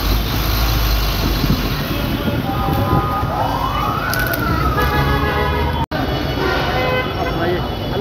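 An emergency vehicle siren gives one wail that rises quickly about three seconds in and then falls slowly, cut off suddenly near the six-second mark. A crowd chatters throughout.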